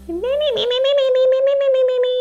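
A woman's long, high-pitched "mmm" of enjoyment while eating toast. It rises at first, then holds steady with a fast flutter.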